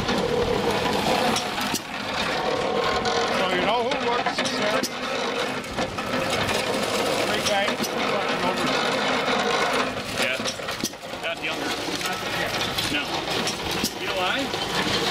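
People talking in the background over a steady mechanical running noise, with a few sharp knocks scattered through it.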